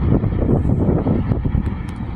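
Low, uneven rumble like wind buffeting the microphone, over the sound of a diesel freight train in the distance.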